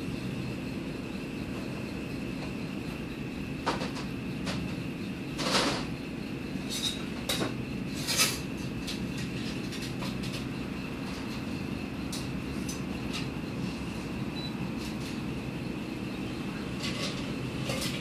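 Glassware and bar tools clinking and knocking now and then as a bartender works, over a steady low hum with a faint high whine.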